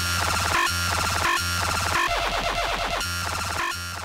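Electronic background music with a heavy pulsing bass and a short synth figure repeating about every 0.7 seconds, a little quieter near the end.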